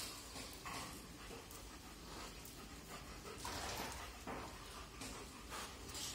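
A golden retriever breathing and panting faintly, in soft irregular puffs.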